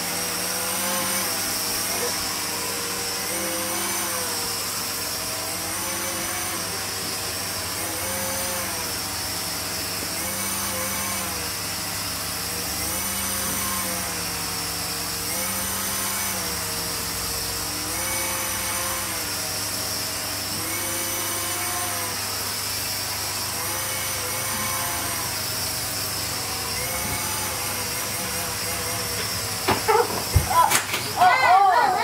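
Small electric motor and rotor of an Air Hogs Vectron Wave toy flying saucer whining as it hovers, its pitch rising and falling every second or two as the motor speeds up and slows to hold height.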